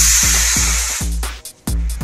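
Model rocket's C-class solid-fuel motor burning with a loud rushing hiss that fades out about a second in. Electronic music with a steady deep thumping beat plays under it.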